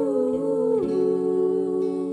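A group of four women's voices singing in close harmony, holding long notes that move to a new chord about a second in, over a soft instrumental backing with a slow-moving bass line.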